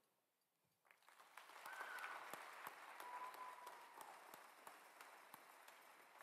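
Faint, distant audience applause that starts about a second in, builds quickly and then slowly tapers off, with a faint drawn-out call from the crowd.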